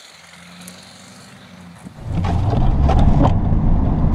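Faint and distant for the first two seconds. Then it jumps to the loud in-cab sound of a Chevrolet Silverado 3500 dually's 6.6-litre Duramax LB7 turbodiesel V8 running, a dense low rumble with irregular knocks and rattles.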